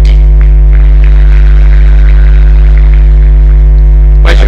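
Loud, steady electrical mains hum with a stack of even, unchanging overtones, carried in the speech's audio feed.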